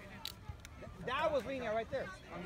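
A voice calling out, starting about a second in. Before it there is quieter outdoor background with a few faint short knocks.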